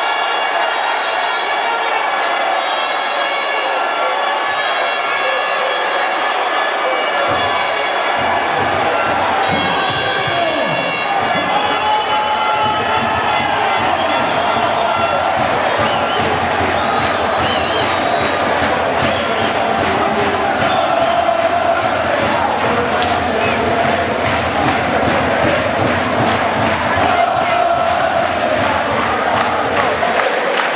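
A large arena crowd cheers a goal, with a steady horn-like drone held over the cheering for roughly the first ten seconds. It then turns into loud massed chanting.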